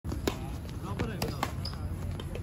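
Doubles badminton rally: about four sharp hits within the first second and a half, rackets striking the shuttlecock and players' feet landing on the hard court, with players' voices.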